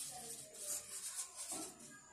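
Felt-tip marker writing a word on paper: a quick run of short, faint rubbing strokes.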